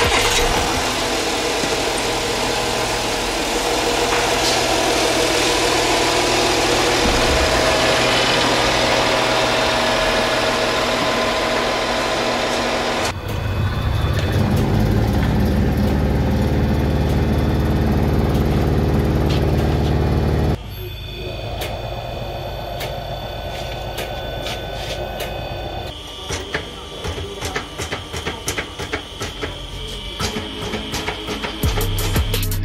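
A car engine running in a workshop, heard in several short cut-together clips. First a dense noisy stretch, then a deep steady hum, then quieter ticking, with the sound changing abruptly at each cut.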